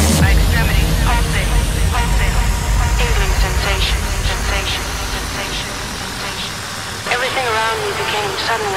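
Breakdown in a hard-techno DJ mix: the beat drops out right at the start, leaving a long falling sweep and a fading low rumble. Over it come short voice-like sounds, each falling in pitch, with a louder cluster near the end.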